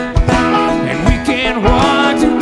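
A bluegrass band playing live, with banjo, electric guitar, upright bass and drums, the drums keeping a steady beat.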